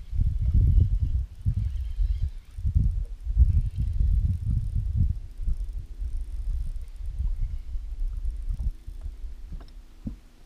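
Wind buffeting the microphone, a low rumble that comes and goes in gusts. A faint steady hum joins about halfway through.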